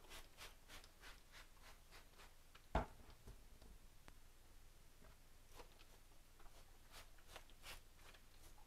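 Near silence with faint handling ticks, and one sharper knock about three seconds in as a plastic trigger spray bottle is set down on a concrete worktop. Faint rubbing of a cloth wiping the worktop follows.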